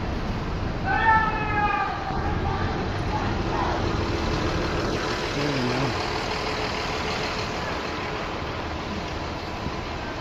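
Steady city-street traffic noise around a marching group. About a second in there is a brief loud pitched call, likely a shout, and a short lower voice about halfway through.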